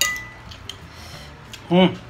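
A metal fork clinks once against a ceramic plate, ringing briefly.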